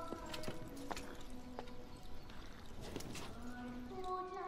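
Hooves of several horses clopping irregularly, with held notes of orchestral film music beneath.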